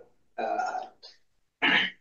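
A man's voice making three brief, throat-like sounds, the longest about half a second.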